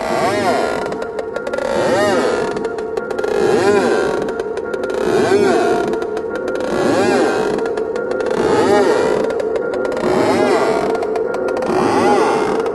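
Psychedelic trance music: a dense synth texture with a sweep that rises and falls in pitch about every second and a half to two seconds, repeating steadily.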